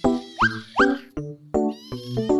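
Background music with short plucked notes; over it, a young kitten mews twice in quick succession, each call rising sharply in pitch, about half a second in and again just under a second in.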